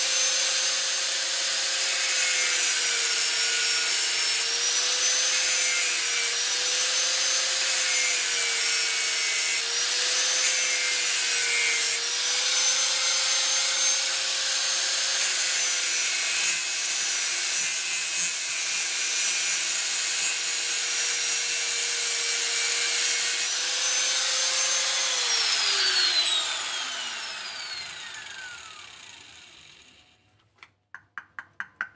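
Electric angle grinder with an abrasive disc grinding a wooden block. Its steady whine dips in pitch several times as the disc bites under load. About 25 seconds in it is switched off and winds down with a long falling whine.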